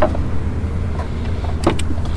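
Steady low rumble, with a couple of faint clicks near the end.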